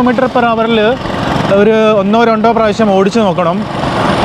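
Speech only: a man talking almost without pause.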